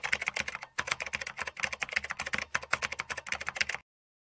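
Computer-keyboard typing sound effect: rapid clicking keystrokes that stop near the end.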